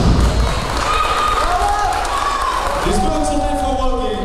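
A man's voice calling out from the stage, ending in a shouted "Let's go!", over low thumps and rumble once the band's music has stopped.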